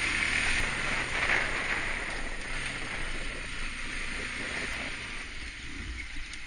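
Steady rush of wind over the microphone of a camera moving along a road, with a low rumble of road noise underneath; the hiss eases slightly near the end.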